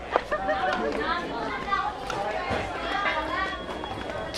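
Voices of people talking, overlapping chatter that the recogniser could not make out as words, with a sharp click about a quarter of a second in.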